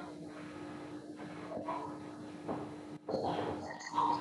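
Background noise from an open microphone on a video call: a steady electrical hum under a muffled, indistinct rustle, growing louder near the end.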